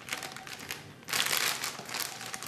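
Packaging rustling and crinkling as it is handled, with a louder, denser spell of crinkling starting about a second in.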